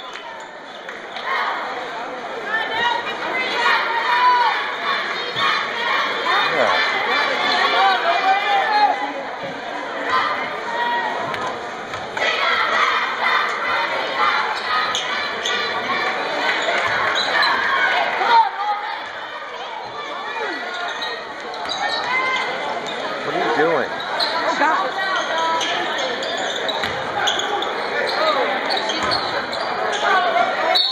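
Basketball bouncing on a gym's hardwood floor during play, under a steady mix of many voices shouting and talking from players and spectators.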